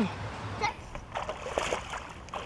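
A carp thrashing in a landing net in shallow river water, throwing up irregular splashes.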